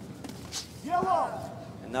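A voice calling out briefly about a second in, its pitch bending up and down, over a steady low background of arena noise.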